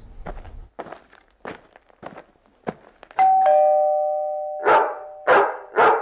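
A two-note doorbell chime rings about halfway through, a higher note then a lower one, both ringing on and fading. Then a dog barks three times, loudly.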